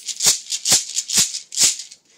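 Percussion keeping the beat alone in worship music, four even strokes about two a second, with no singing or other instruments.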